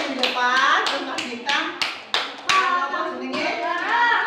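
A run of irregular hand claps from a group of people, loudest over the first two and a half seconds, with young children's voices calling out over them.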